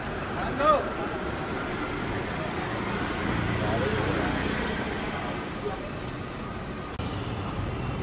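A car driving slowly past close by, its engine and tyres a low steady rumble that swells about three to four seconds in and then fades.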